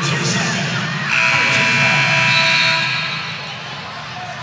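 Arena horn at the scorer's table sounding once, a steady buzzing tone held for about a second and a half, over crowd murmur in a large gym; at this dead ball after a foul it signals a substitution.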